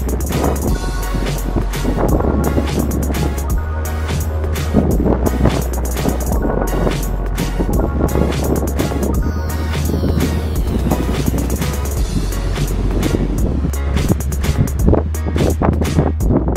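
Background music with a steady beat and a bass line that steps between notes.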